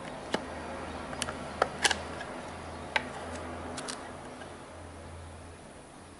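Sharp plastic clicks from the white plastic housing of a Ubiquiti NanoStation Loco M2 as its bottom cover is unclipped and slid off, about six separate clicks in the first four seconds, over a faint low hum.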